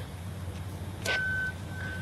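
Two-way radio: a short burst of static about a second in, followed by two short steady beeps at the same pitch, over a low hum.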